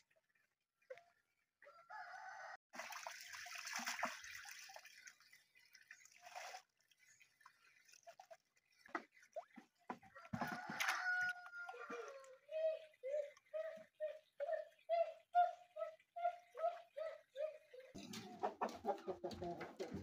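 Domestic chickens calling: a rooster crowing, then a steady run of short clucks, about two or three a second, in the second half.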